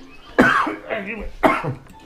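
A person coughing twice, two sharp coughs about a second apart.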